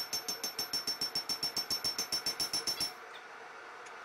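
A hammer rapidly striking a hot spring-steel knife blank on an anvil, about seven ringing blows a second, stopping about three seconds in.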